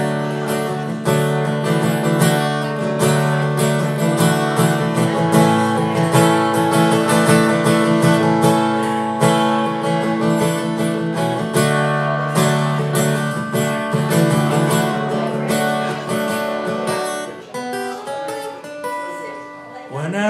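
Acoustic guitar strummed in an instrumental passage of a song, chords ringing out steadily. The playing gets softer for the last couple of seconds.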